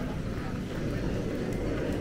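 Steady low background rumble of a large airport terminal hall, with no distinct voices or sudden sounds.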